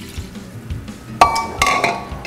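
Kitchen glassware clinking: a sharp glass clink with a brief ring about a second in, then a few lighter knocks, as glass dishes and jars are handled on the counter.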